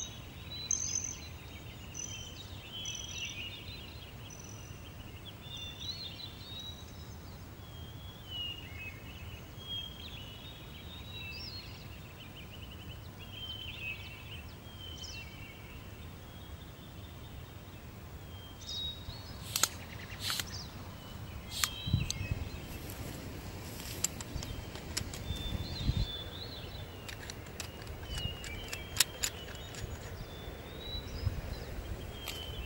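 Birds singing over a low outdoor rumble. In the last third come a series of sharp clicks and knocks and a few low thuds.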